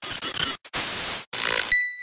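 Logo sting sound effect: loud noisy rushing in three bursts with short breaks, cutting off abruptly near the end into a bright ringing ping that fades slowly.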